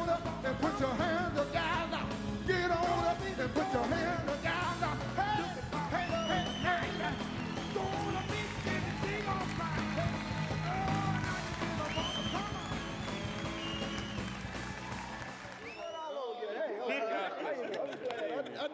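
Live soul band and male vocal group performing, with lead singing over bass and a saxophone. The music cuts off about two seconds before the end, giving way to men's voices talking.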